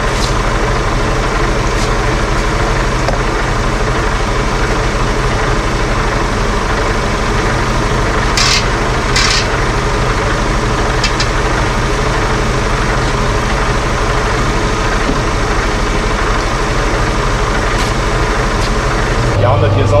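A truck's diesel engine idling with a steady low hum during refuelling, with two short sharp clicks about eight and nine seconds in.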